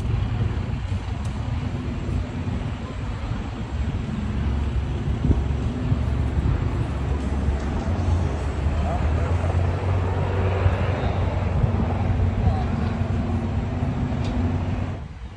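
An engine running steadily at idle with a low drone, with faint voices in the background.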